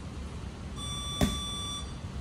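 One long electronic beep, about a second, from a workout interval timer, marking the end of a work round. A single punch lands on the heavy bag with a thud partway through the beep.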